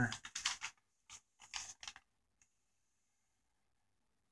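A paper envelope being handled: a few short rustles and taps in the first two seconds, then a single click a little later.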